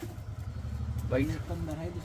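A motor engine idling with a low, steady rumble, under indistinct voices.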